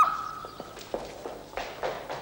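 The end of a woman's cry of 'Maman' dying away in the first second, followed by a few soft footsteps on a wooden floor.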